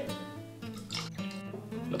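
Background music with plucked and strummed acoustic guitar, holding steady notes.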